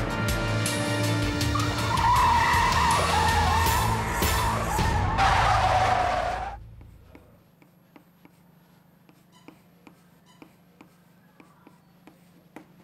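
Car tyres screeching under hard braking over tense drama music: the squeal wavers from about two seconds in, swells into a harsh skid at about five seconds and cuts off abruptly. Faint chalk taps on a blackboard follow near the end.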